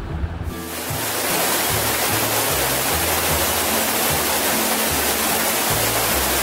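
Steady rush of a waterfall that comes in about half a second in, over background music with a repeating low bass line.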